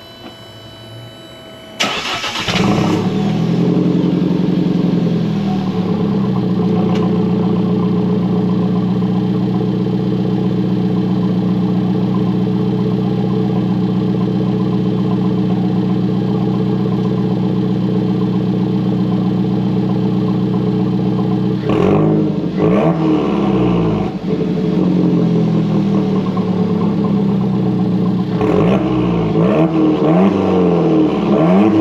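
Alfa Romeo 4C's 1.75-litre turbocharged four-cylinder cold-started, heard from behind at the exhaust. It catches suddenly about two seconds in with a flare of revs, then settles over a few seconds into a steady idle. In the last eight seconds it is blipped several times, the revs rising and falling.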